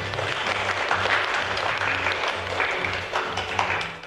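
Applause from the audience and contestants, a dense, steady clapping, with background music carrying a low pulsing beat underneath.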